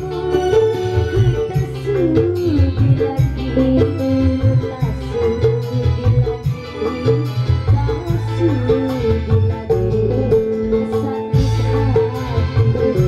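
Live dangdut band music: a woman singing a wavering melody into a microphone over a steady beat of kendang hand drums.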